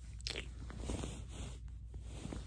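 Pillow and bedding fabric rustling right against the phone's microphone as a head shifts on the pillow, with many small crackles and clicks.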